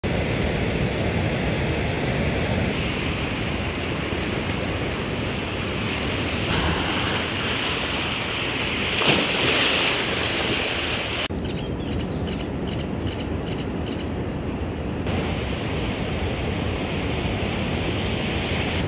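Ocean surf breaking and washing up onto a sandy beach, a steady rushing that swells louder about nine seconds in as a wave comes up the sand, with wind on the microphone.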